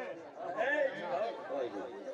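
Chatter of a seated crowd: several men talking at once.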